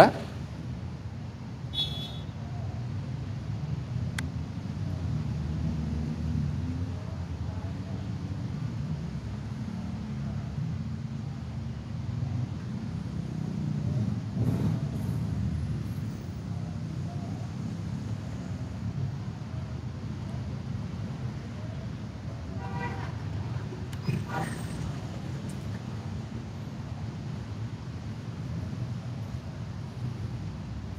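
Steady low rumble of congested road traffic, with a few brief vehicle horn toots now and then.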